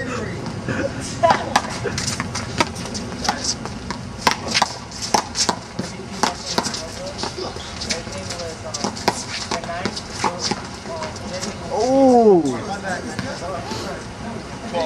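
One-wall handball rally: a small rubber ball slapped by gloved hands and smacking off the wall and the court, mixed with sneakers scuffing the ground, in a quick string of sharp hits. Near the end a man's voice lets out one loud shout that rises and falls.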